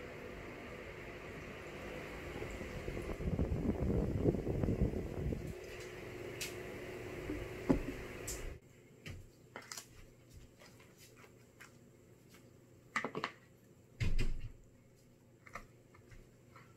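A plastic bottle of carbonated lemon-lime soda is poured into a glass mug, with a couple of seconds of pouring and fizzing and a sharp click near the end as the cap goes back on, all over a steady background hum. About halfway through the hum stops abruptly, and a few light clicks and two louder knocks of tableware being handled follow.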